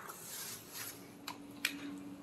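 Footsteps and a rolling suitcase on a tiled floor, with two sharp clicks a little after halfway and a faint steady hum from about halfway.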